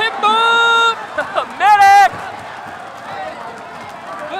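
Two long, high-pitched excited yells, the second rising and then held, reacting to a fighter being knocked down. Quieter crowd noise follows for the last couple of seconds.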